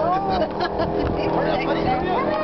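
Airboat engine idling steadily while the boat sits still, with excited voices over it.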